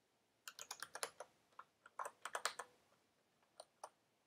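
Faint computer keyboard keystrokes in quick runs: a flurry of taps about half a second in, another around two seconds in, then two single taps near the end.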